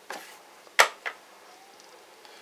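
A wooden chess piece, a rook, set down on the board with one sharp knock about a second in, followed by a lighter click.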